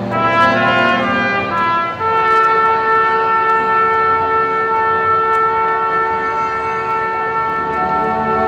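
Brass band playing under a conductor: moving trumpet and brass lines for the first two seconds, then a long sustained chord held until near the end, when the notes change again.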